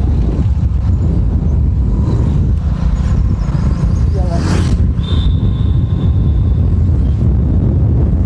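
Wind buffeting the microphone and a motorcycle's engine running as it rides along a road: a dense, steady low rumble. A brief voice cuts in about four and a half seconds in, followed by a thin high tone held for about a second and a half.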